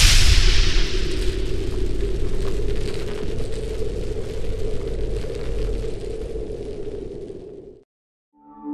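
Cinematic boom sound effect in a TV promo: a sudden loud hit, then a long noisy tail with a deep rumble that slowly fades over about seven seconds and cuts off abruptly.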